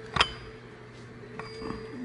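A single sharp metallic clink with a brief ring, about a fifth of a second in, as the steel camshaft timing gear is handled onto the tapered cam nose of a Caterpillar 3406 diesel's front geartrain, followed by faint handling sounds.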